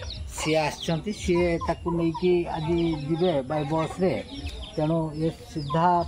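Desi chickens clucking over and over in short calls, with many high, quick peeping calls over the top.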